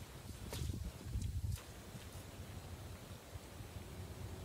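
Wind rumbling on the microphone, uneven and stronger for the first second and a half, with a few faint clicks.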